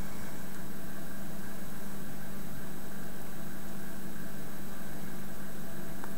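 Steady machine hum: a constant low tone over an even hiss, unchanging.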